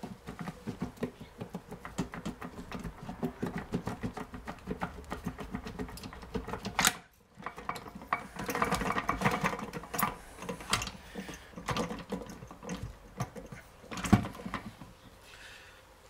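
The aluminium gearbox casing of a BE4 manual gearbox being rocked and tugged by hand on its gear shafts, with metal parts rattling and clunking in a rapid clatter, a sharp knock about seven seconds in and a loud knock near the end. The casing will not lift free, still held by something not yet removed.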